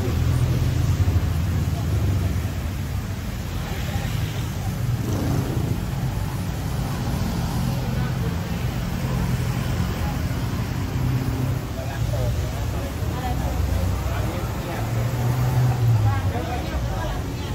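City street traffic: the low rumble of car and motorbike engines, swelling at the start and again near the end, with voices of passers-by over it.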